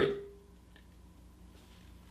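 A spoken word trailing off, then near silence: faint room tone with a low steady hum.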